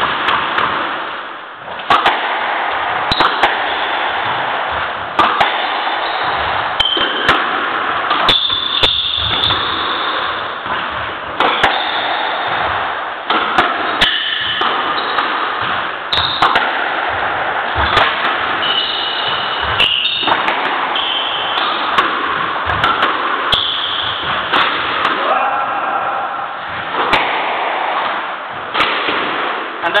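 A squash rally: the ball cracking irregularly off rackets and the court walls, with short high squeaks from players' shoes on the wooden floor, over a steady background hiss.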